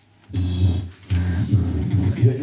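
Audience laughing loudly in two swells, the first beginning a moment in and the second just after the one-second mark, in reaction to a punchline.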